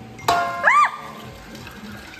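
A short chime-like sound effect: a bright ringing onset with several steady tones about a quarter second in, followed by a quick tone that rises and falls.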